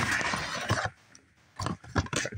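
Cardboard toy box and plastic packaging rustling and crinkling as they are handled. The rustle stops about halfway through, and a few short handling noises come near the end.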